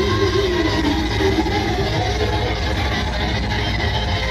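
Progressive metal band playing loud live, guitars and drums with the singer's voice over them during the first second or so. The sound is distorted and overloaded from the venue's extreme volume.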